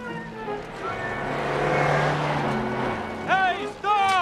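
A car speeding past, its engine and road noise swelling to a peak and fading away, over film score music. Near the end come short, high squeals that rise and fall in pitch.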